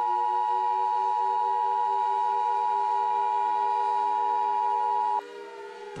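Emergency Alert System two-tone attention signal (853 and 960 Hz together), a loud steady tone that cuts off suddenly about five seconds in. Fainter, slowly sliding tones drone underneath throughout.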